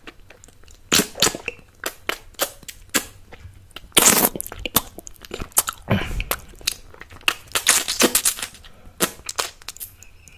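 Close-miked wet mouth sounds of sucking and licking a candy: a quick run of sharp wet clicks and smacks, with a longer slurp about four seconds in and another around six seconds.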